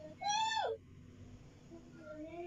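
African grey parrot giving one short clear call, about half a second long, its pitch rising then falling.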